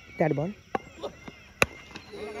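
A cricket bat hitting a tennis ball, one sharp crack about one and a half seconds in, the loudest sound here. A short shout comes just before it, near the start.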